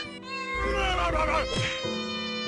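A cat meowing over background music.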